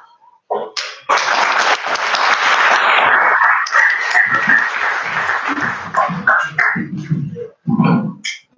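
Audience applauding, starting about a second in and dying away after about six seconds, with a few voices as it fades.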